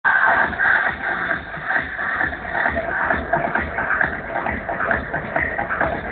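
Electronic dance music played loud over a free-party sound system, with a steady kick-drum beat.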